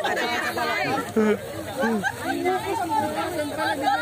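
People talking at once: overlapping chatter of a group, several voices over one another.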